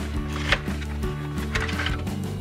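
Background music, over the crackle of a cardboard box insert being pulled apart, with one sharp snap about half a second in and a few softer crackles near the end.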